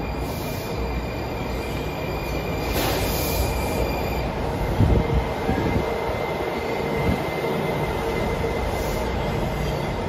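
Washington Metro train arriving at an elevated station, its cars rolling past with steady rumbling wheel noise and a faint high whine. A few heavy thumps come about halfway through.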